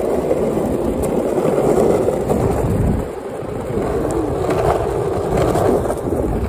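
Longboard wheels rolling over rough asphalt, a steady rumble that eases briefly about halfway through.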